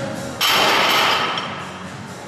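A loaded barbell racked onto the steel hooks of a squat rack: a sudden loud metallic clash about half a second in that dies away over about a second, over background music.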